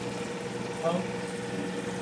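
A steady machine hum with a low, even tone, under a single spoken word.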